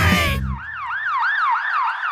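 Cartoon ambulance-style siren sound effect, a warbling tone that rises and falls about three times a second. It starts about half a second in, as the music stops.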